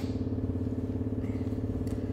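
Wall-mounted electric fans running: a steady, pitched motor hum with a fast flutter, with faint rustling near the end.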